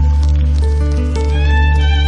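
Instrumental music: a held low bass note under sustained melody lines, with one upward slide in pitch a little past the middle.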